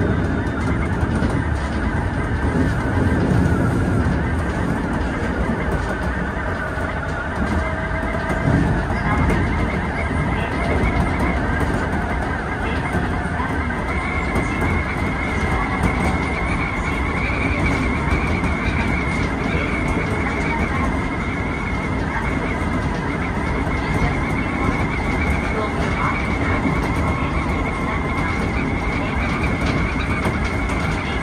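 Keisei 3400-series electric train running on the line, heard from the driver's cab: a steady rumble of wheels on the rails with a high whine that rises in pitch about eight to ten seconds in and then holds steady.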